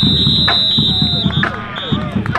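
Referee's whistle: one long high-pitched blast that ends about one and a half seconds in, then a short second blast near the end, over voices.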